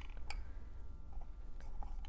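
Faint handling sounds of damp cotton balls being pressed into a clear plastic cup, with a few light ticks.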